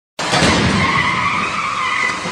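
A sudden crash as a side-impact test barrier strikes a car. It runs straight into a steady, high tyre squeal as the struck car's tyres are scrubbed sideways across the floor.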